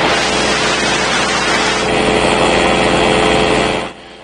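Paramotor engine and propeller running steadily in flight: a constant droning engine note under a broad rushing hiss. It cuts off abruptly just before the end.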